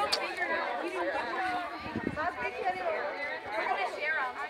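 A group of teenage girls chattering, many voices talking over one another with no single clear speaker.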